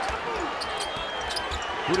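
Arena crowd noise in a basketball gym, with a basketball being dribbled on the hardwood court.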